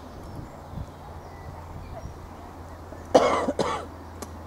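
Two short coughs close to the microphone, a little after three seconds in, the second shorter than the first.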